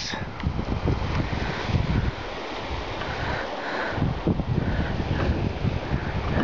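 Gusty lake breeze buffeting the camera microphone: an irregular low rumble with a steady hiss.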